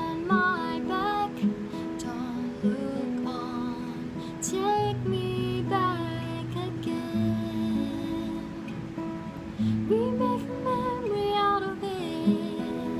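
A woman singing, accompanying herself on an acoustic guitar.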